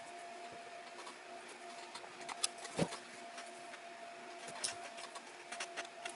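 Quiet handling sounds of hand-stitching thick leather: a few faint clicks and scrapes as the needle is worked through several layers of hide and fur, over a faint steady hum.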